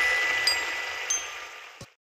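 A few light, high chiming dings over a soft hiss, the whole fading away and dropping to silence near the end.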